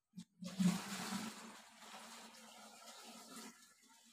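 Water poured from a plastic bucket into a plastic watering can: a splash at first, then a steadier running pour that fades and stops about three and a half seconds in.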